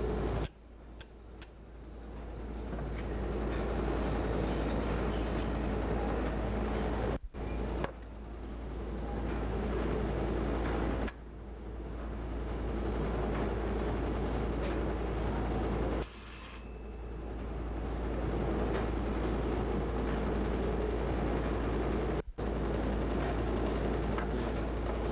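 Wire nail making machine running, a dense, continuous mechanical clatter. The sound drops out abruptly four or five times and builds back up over a few seconds each time.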